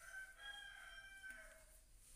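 A faint, distant bird call: one drawn-out call of about a second and a half that dips lower at the end.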